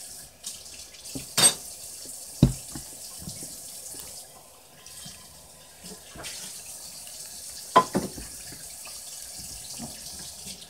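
Homemade glue-and-borax slime squelching wetly as it is kneaded and squeezed by hand over a glass bowl, with a few sharp sticky smacks.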